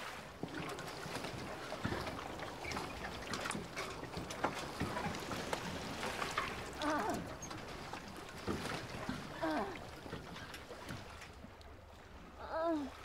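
Harbour ambience: a steady wash of water lapping around small moored fishing boats, with many small knocks and clicks. Two short wavering animal calls come through, about seven and nine and a half seconds in.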